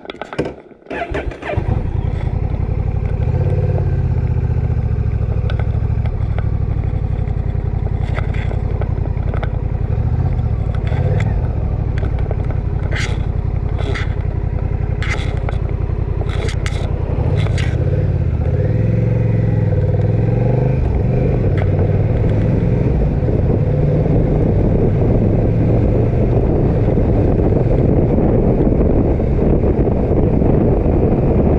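Motorcycle engine starting about a second and a half in after a few clicks, then running as the bike pulls away and rides on, its note rising and falling with throttle and gear changes. Several sharp clicks come in the middle, and wind noise grows as speed builds.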